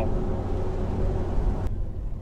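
Cabin noise of a 2016 Corvette Z06 rolling on a wet road: a steady low engine drone under tyre hiss. The hiss falls away sharply near the end.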